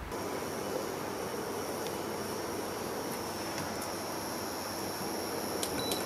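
Green curry simmering in a pan: a steady bubbling hiss with a few small pops, and a faint steady high whine over it.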